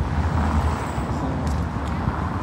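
Steady outdoor background noise: a low rumble under an even hiss, with a couple of faint clicks near the end.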